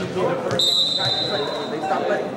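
Referee's whistle blown once, a steady high tone held for a little over a second, signalling the server to serve, over crowd chatter in the gym.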